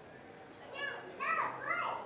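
A few high-pitched shouted calls from raised voices, beginning a little under a second in and overlapping near the end, over a low background murmur.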